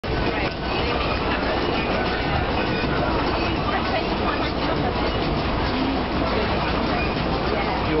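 Steady running noise inside a moving passenger train carriage, with a low hum, and indistinct passenger chatter mixed in.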